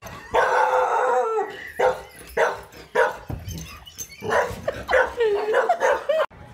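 A dog barking at a zombie-baby doll: one long call, then a few short barks, then longer calls that waver in pitch near the end.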